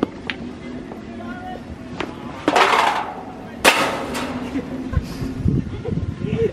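Crazy-golf ball struck with a putter and rattling against the course's metal obstacle: a few light clicks, then two short clattering rattles about a second apart, the second the loudest.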